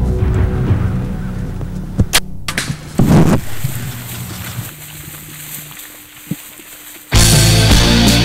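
Tense background music with the sharp snap of a bow shot about two seconds in, followed by a louder burst about a second later. Loud rock music cuts in near the end.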